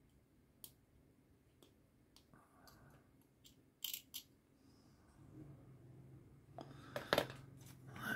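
Small plastic model-kit parts clicking and tapping faintly as they are handled, with a sharper pair of clicks about four seconds in and a short clatter near the end.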